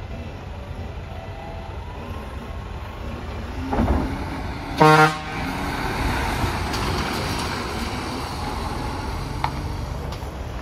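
Mitsubishi Fuso heavy carrier truck's diesel engine running as it pulls away and turns. A brief louder burst comes just before a single short horn toot about five seconds in.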